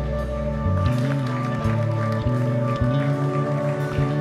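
Slow live worship music from a church band: keyboard chords over changing bass notes, with occasional light drum hits.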